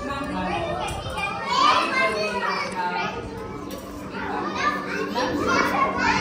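A group of children's voices chattering and calling out together, mixed with some adult speech.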